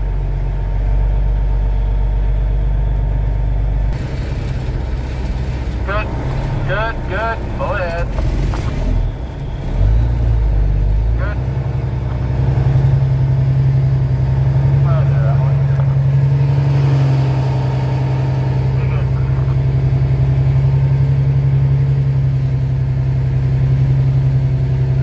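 Cummins N14 diesel in a Freightliner Classic truck running at low speed, heard from inside the cab as it waits and creeps up to the scale. The engine note shifts about four seconds in, dips briefly around ten seconds, then settles into a steadier, stronger drone.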